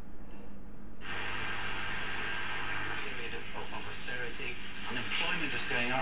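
Eddystone S680X valve communications receiver coming on air. About a second in, a rush of static hiss starts with a low hum under it. From about three seconds in, a broadcast voice comes through the hiss with a faint high whistle. This shows the receiver is still working after its voltage checks.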